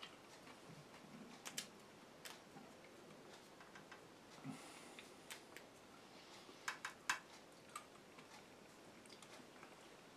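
Near silence with faint, scattered small clicks and light handling noises as strips of veggie bacon are laid onto a burger bun on a plate, including a quick run of three clicks about seven seconds in.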